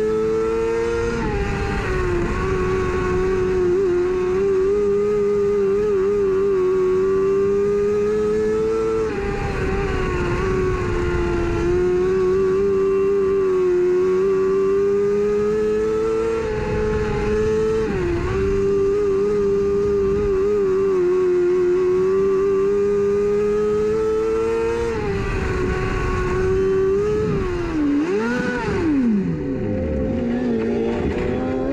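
A dirt-track mini late model's engine running hard at high revs, heard from inside the cockpit, its pitch dipping briefly about every eight seconds. Near the end the revs fall off sharply as the car slows right down.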